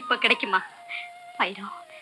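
A woman speaking in a tearful, wavering voice, with a long held note of background film music under her words.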